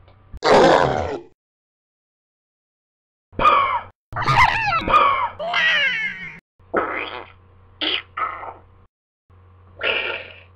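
A person's voice making monster grunts and growls: a short rough cry just after the start, then, after about two seconds of silence, a run of grunting calls.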